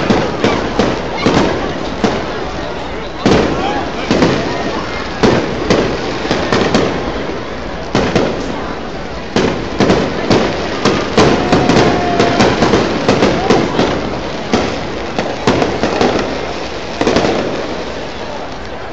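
Aerial fireworks shells bursting overhead in quick succession, many sharp bangs and crackles that come thickest midway through, with crowd voices underneath.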